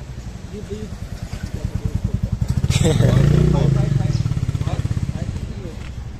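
A motorcycle engine with a fast, even beat, passing close by: it grows louder to a peak about three seconds in, then fades away.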